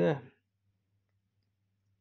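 A man's voice ending a sentence with one short word, then near silence with only a faint steady low hum.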